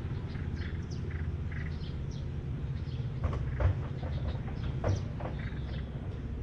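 Wahl Magic Clip cordless hair clipper running with a steady low hum while cutting hair on the back and side of the head, with a few short, louder strokes from a little past halfway.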